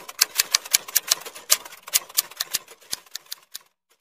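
Typewriter keystroke sound effect: a rapid run of sharp key clicks, about eight a second, that stops a little before the end, followed by a few faint clicks.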